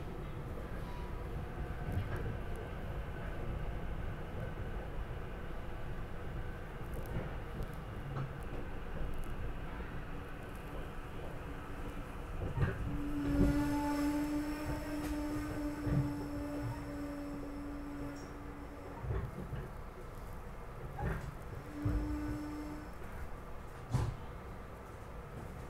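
Inside a SEPTA Regional Rail passenger car: the steady low rumble of the train running, with occasional knocks. About halfway through, a sustained pitched whine sets in for several seconds, and it returns briefly near the end.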